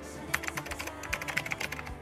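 Computer keyboard typing: a quick, irregular run of keystroke clicks starting about a third of a second in. It is the sound effect for text being typed out on screen.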